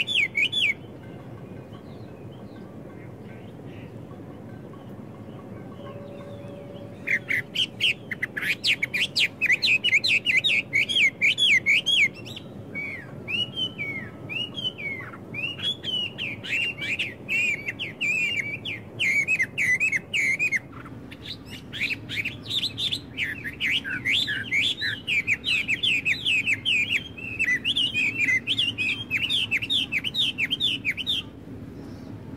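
Songbirds singing rapid, high, chattering phrases. After a pause of about six seconds near the start, the song runs almost without a break, with a stretch of swooping notes in the middle and quick trills toward the end, over a faint steady background noise.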